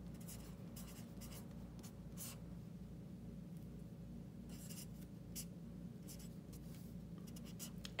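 Felt-tip marker writing numbers and drawing a line on paper, in several short scratchy strokes with pauses between them, over a faint low hum.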